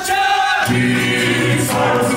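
Male voices singing together, choir-style, as part of a Caucasian folk dance medley. A low held chord enters about half a second in beneath a higher melodic line.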